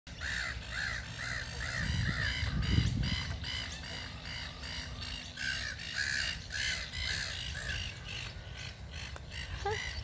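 A bird calling over and over in a long series of short, arched, crow-like calls, about two a second. A low rumble of wind on the microphone rises briefly around two to three seconds in.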